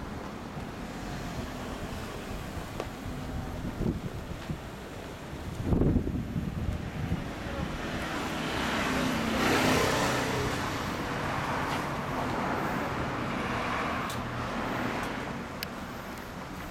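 Yamaha Cygnus-X SR scooter's single-cylinder engine running through an aftermarket Realize Racing exhaust. There are short sharp throttle blips about four and six seconds in, the second the loudest, then a longer swell that peaks in the middle and fades.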